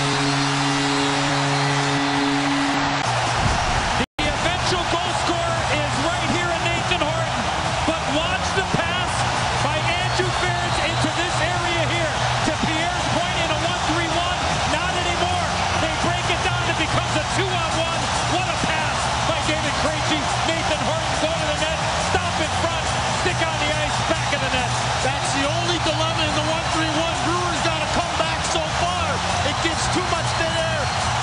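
Hockey arena goal horn blaring in steady chord-like tones for about three seconds over a loudly cheering crowd. After a brief cutout near four seconds, the crowd keeps cheering loudly with music over the arena's sound system.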